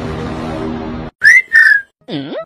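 Background music that cuts off suddenly about a second in, followed by two short, loud whistle notes, the first rising into a held pitch and the second held a little longer before dipping at its end.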